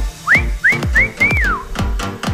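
Electronic workout music with a steady, fast kick-drum beat. In the first second and a half a whistle-like phrase sounds over it: three short rising notes, then a longer one that rises and falls.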